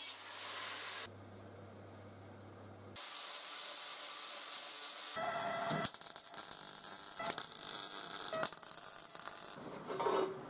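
Angle grinder on sheet steel in short bursts, then from about five seconds in the irregular crackle of a MIG welder laying a bead along a steel strip on a steel sheet.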